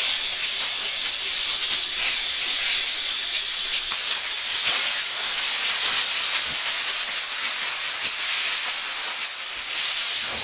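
Oil-brushed tilapia sizzling steadily on a hot stone slab over coals, with a few faint clicks of the knife against the stone.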